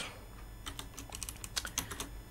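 Computer keyboard keystrokes: a quick run of light key clicks starting about two-thirds of a second in.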